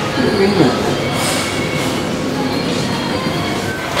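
Elevator arriving, a steady mechanical rushing noise with faint whining tones, with a few words of voices about half a second at the start.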